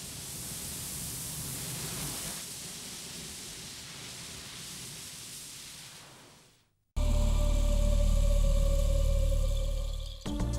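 A rushing, surf-like noise of surging water swells and fades over about seven seconds. After a brief silent break, loud music with a held deep bass chord starts abruptly.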